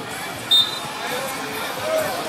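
Sideline and on-field voices at a children's soccer game, with a short sharp sound about half a second in.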